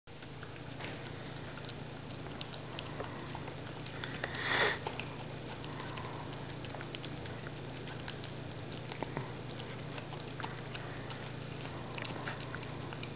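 Dachshund eating soft food from a plate: small, scattered wet clicks of chewing and licking, with one louder half-second rush of noise about four and a half seconds in. A steady low hum runs underneath.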